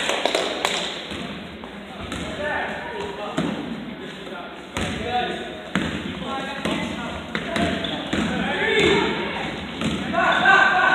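Basketball being played in a gym: indistinct voices of players and onlookers, with a few irregular sharp thuds of the ball on the hardwood floor.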